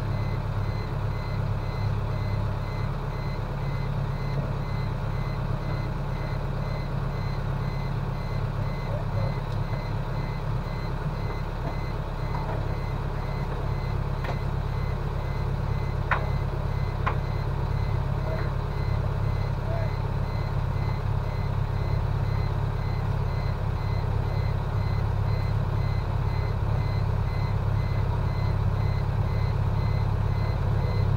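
Boat engine idling steadily with a low hum, with a faint electronic beep repeating throughout.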